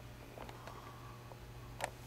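Quiet indoor room tone: a steady low hum, with a few faint clicks about half a second in and a sharper click near the end.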